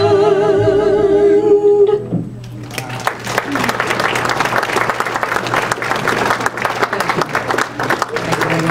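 Two women's voices holding a final sung note with vibrato, which cuts off about two seconds in; then audience applause.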